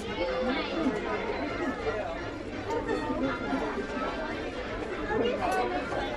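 Background chatter of several people talking at once, steady and at a moderate level, with no single voice standing out.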